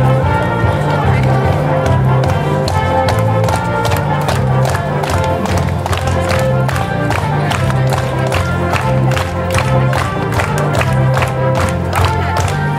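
Upbeat dance music with a steady beat and vocals, accompanying a children's carnival dance, with a crowd clapping along in time.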